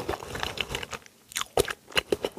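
Close-miked chewing of a mouthful of cheese ramen noodles: scattered soft mouth clicks and smacks, with a brief pause a little after a second in.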